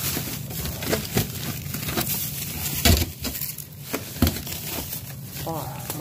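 Plastic food bags crinkling and rustling as packages of chicken fillet are shifted and handled. Two louder knocks come about three and four seconds in.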